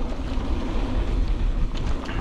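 Wind buffeting the microphone as a Polygon Siskiu T7 mountain bike rolls down a dirt singletrack at speed, mixed with tyre and trail noise. It is a steady rushing with a heavy low rumble.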